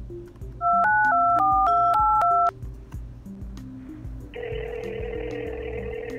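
Phone keypad tones as a number is dialled, a quick run of about eight beeps, then about four seconds in one long ring of the ringing tone as the call goes through.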